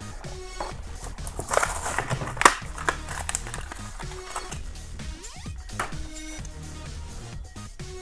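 Quiet background music under the crinkling and tearing of a Hot Wheels blister pack, the plastic bubble and card being ripped open by hand. The tearing is loudest about two seconds in.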